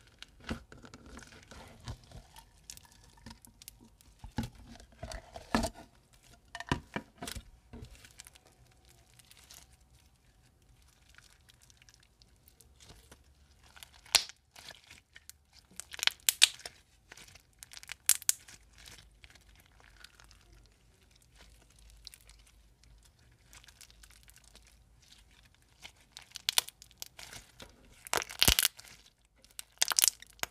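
Blue slime packed with small white foam beads, squeezed and kneaded by hand: an irregular run of crunchy clicks and crackles, with louder clusters about halfway through and again near the end.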